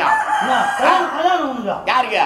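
A performer's voice in drawn-out calls that rise and fall in pitch, several in a row.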